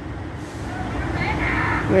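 Road traffic noise from a passing vehicle, growing steadily louder over the two seconds.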